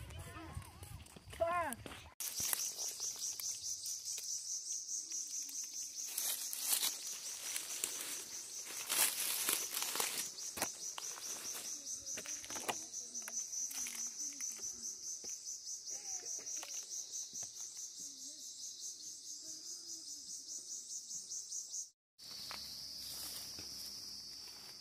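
High-pitched insect buzzing in the woods, steady and pulsing a few times a second, with scattered knocks and rustles. Near the end it breaks off and a steadier, slightly lower insect drone takes over.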